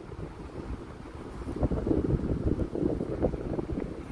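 Low, irregular rumbling of wind noise on the microphone, louder from about a second and a half in.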